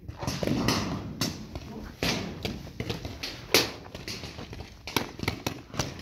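Sporadic paintball marker fire: a handful of sharp pops at irregular intervals, the loudest about three and a half seconds in.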